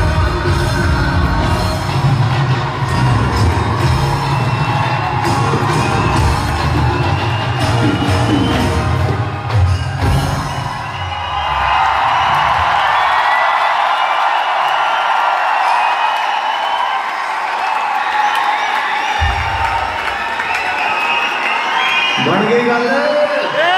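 Live concert band music with heavy bass and drums, amplified in a large hall, ending about eleven seconds in. The audience then cheers and claps, with whoops and whistles over the crowd noise.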